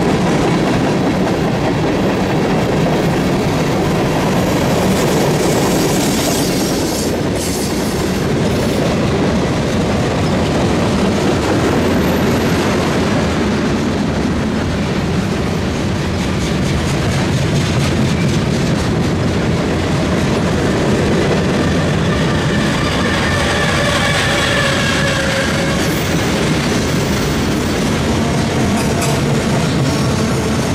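CSX mixed manifest freight train rolling past at close range: covered hoppers and flatcars give a steady rumble with the clickety-clack of wheels over the rails. A faint squeal of wheels rises briefly about three-quarters of the way through.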